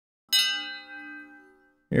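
A single bell-like chime, struck once and ringing out, fading away over about a second and a half: a sound effect marking a time-skip transition.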